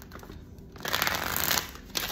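Tarot cards being shuffled by hand: a short rush of card noise starting about a second in and lasting under a second.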